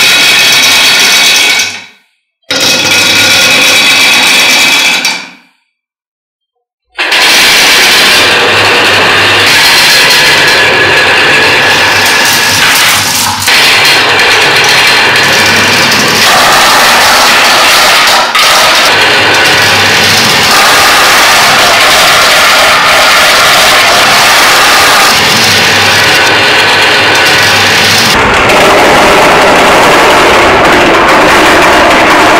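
Dozens of marbles rolling and clattering down dimpled wooden tracks and over bumpy plastic track pieces: two short runs in the first five seconds, then a dense, continuous rattle from about seven seconds on.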